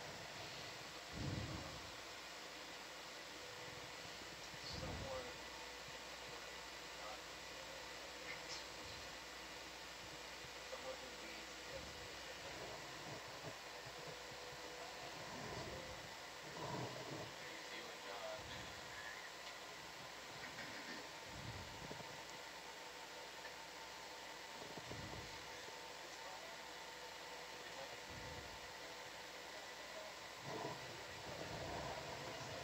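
Steady hiss of the control-room audio feed with a faint constant electronic hum, broken every few seconds by soft low thumps.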